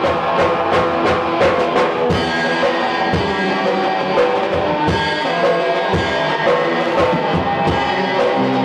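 Rock band playing live, with electric guitar over a drum kit keeping a steady beat of kick and snare hits.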